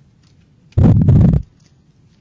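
Faint clicks of a computer keyboard being typed on, cut into about a second in by a short, loud rush of noise close to the microphone that lasts under a second.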